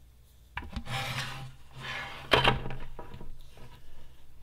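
Large plastic bucket being tipped onto its side and shifted across a tabletop: two stretches of scraping and rubbing, with one sharp knock a little past two seconds in.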